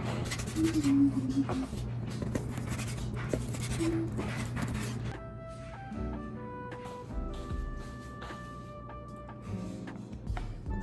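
Kitchen knife cutting through a cooked ribeye steak on a plastic cutting board, a run of short scraping strokes. About halfway in, soft background music takes over.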